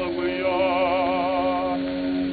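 Tenor singing an operatic aria in a 1904 acoustic recording. A loud phrase ends at the start, then a softer note with wide vibrato is held over a steady sustained accompaniment note.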